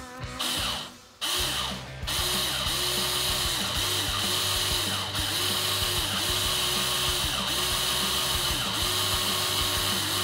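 Handheld power drill starting up about a second in and running steadily, spinning two pieces of wire clamped in its chuck to twist them together into a coil.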